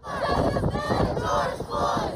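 Large crowd of protesters shouting, many voices at once.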